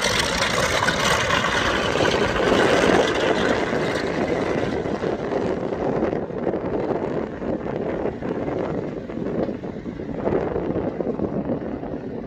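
The four Pratt & Whitney R-2800 radial piston engines of a Douglas DC-6B running steadily as the airliner rolls down the runway away from the listener. The sound grows duller from about six seconds in and fades slightly near the end.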